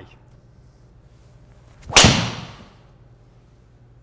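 A Tour Edge EXS 220 driver striking a golf ball once about halfway through: a single sharp, loud crack that dies away over about half a second.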